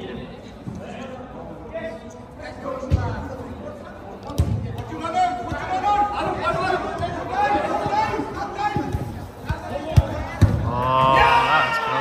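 Indoor five-a-side football play: a football kicked several times with sharp thuds, and players shouting to one another, with a long loud call near the end.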